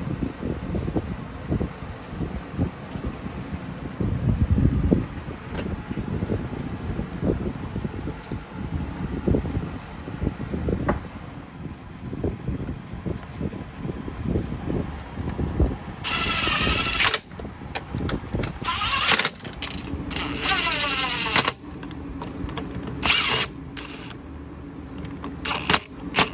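Hands knock and clunk the plastic carburetor and fuel tank back into place on a small Briggs & Stratton mower engine. From about two-thirds of the way in, a DeWalt brushless cordless driver runs in several short bursts, fastening the parts down.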